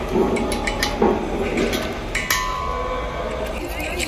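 A hand rivet tool setting rivets through a metal label on a steel LPG cylinder: a run of sharp metallic clicks and clinks, with a brief steady ringing tone in the middle.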